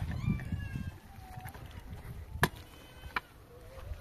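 Short-handled pick striking hard, frozen soil, three blows: near the start, about two and a half seconds in, and a lighter one soon after, with loose earth crumbling after the first.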